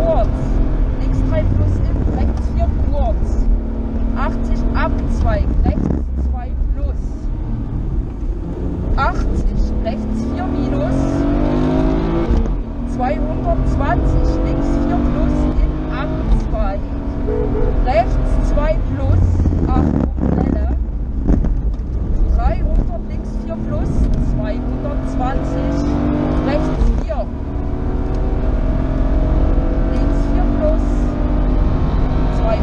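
BMW rally car's engine heard from inside the cabin at full stage pace, its pitch repeatedly climbing under acceleration and falling back at gear changes and lifts, over a steady low rumble.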